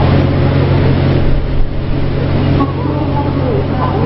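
Fishing boat engine idling with a steady low rumble, amid general harbour noise.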